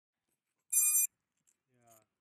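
A single short, high-pitched electronic beep about a second in, followed near the end by a faint rising whine.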